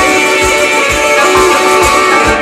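Live blues band playing an instrumental passage: electric guitar, bass and drums with an even, steady beat under held notes.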